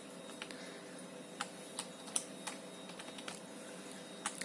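Computer keyboard keys pressed one at a time to step through BIOS menus: about eight separate clicks, spaced unevenly, over a faint steady hum.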